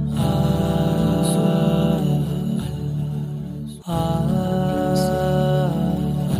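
Wordless vocal background track: a voice singing long held 'ah' notes, each about two seconds, with a brief break a little before four seconds.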